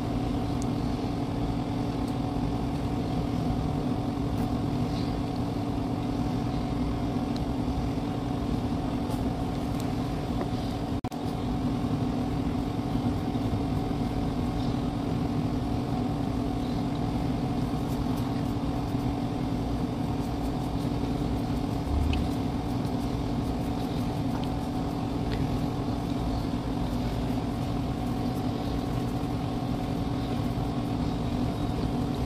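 A steady machine hum with an even background noise that does not change, with a few faint ticks over it.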